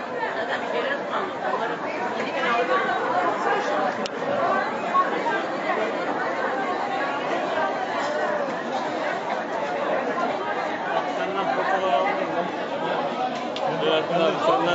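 Overlapping chatter of many people talking at once in a busy covered market hall, with no single voice standing out.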